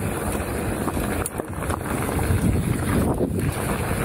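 Wind buffeting an action camera's microphone over the rumble of mountain bike tyres rolling fast on a gravel trail, with a few short rattles and knocks from the bike.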